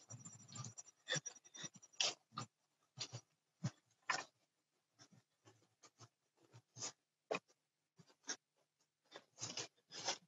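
Brief, irregular scratchy rustles from a cell phone being carried by someone walking across a lawn. The sound cuts in and out over a video-call connection, leaving silent gaps between the bursts.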